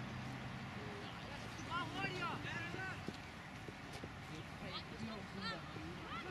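Distant shouts and voices of youth football players across the pitch over steady outdoor ambience. Short runs of quick, high chirps come about two seconds in and again near the end.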